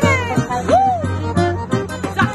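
Forró xote played live by a small band: saxophone melody over the zabumba drum's steady beat, with accordion. About midway one melody note bends up and back down.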